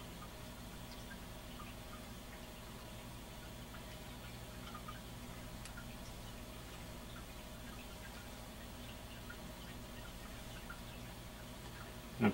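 Quiet room tone: a steady low hum with faint hiss, broken by a few faint, scattered small ticks.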